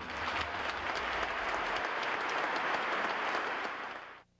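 Concert-hall audience applauding steadily after an orchestral performance, the clapping fading out at the end.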